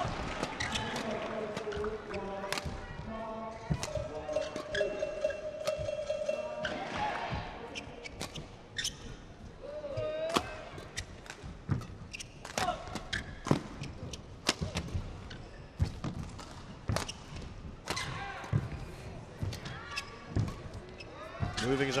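Badminton rally: sharp racket strikes on the shuttlecock and players' footfalls on the court, with a sneaker squeak about ten seconds in.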